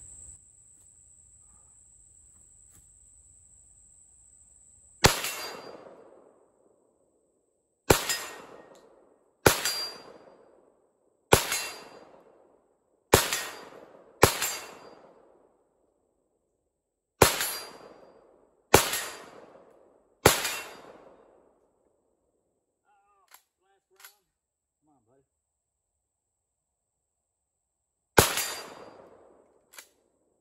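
Ten semi-automatic shots from an Auto Ordnance M1 Carbine in .30 Carbine, fired one at a time at an uneven pace about one and a half to three seconds apart, each followed by a short echoing tail. The last shot comes after a pause of several seconds. A steady high insect buzz is heard before the first shot.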